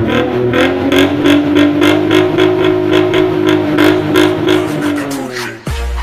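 Engine of a replica Lamborghini Aventador built on a Mitsubishi V6, idling steadily under background music with a quick ticking beat. The engine sound ends suddenly about five and a half seconds in, and music with deep bass takes over.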